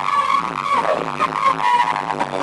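A woman singing into a handheld microphone over a loud electronic backing track, amplified through a stage sound system, holding high notes at the start and again near the end.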